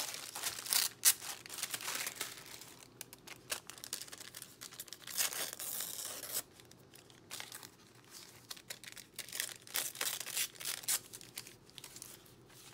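A sheet of thin painted paper being torn and crinkled by hand, in irregular rasping strokes with the longest tear about five seconds in, then rustling as it is pressed flat onto a journal page.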